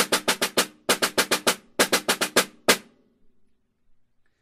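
Concert snare drum played with wooden sticks: quick clusters of five-stroke rolls, doubled bounces running into each pulse, with the wires buzzing under every stroke. The playing stops on a single stroke a little under three seconds in, and the drum rings out briefly.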